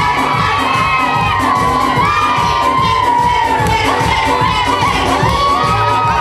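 A crowd of women shouting and cheering with high-pitched whoops over loud dance music with a steady beat.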